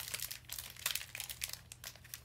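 Foil Pokémon booster-pack wrapper crinkling and crackling in quick, irregular bursts as it is torn open and the cards are pulled out.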